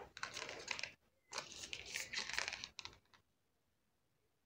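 Faint, rapid clicking and rustling of hands handling a paper jewellery card, in two short stretches that stop about three seconds in.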